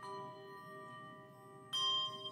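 Handbell choir playing a slow, reflective piece. Sustained ringing chords, with a new chord struck at the start and a louder one near the end.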